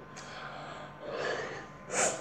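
A child breathing audibly into the microphone: a breathy rush of air about a second in, then a quick, sharp intake of breath at the end.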